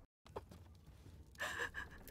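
A woman's short, breathy sobbing gasp about one and a half seconds in. Before it comes a brief drop to dead silence, then faint room noise.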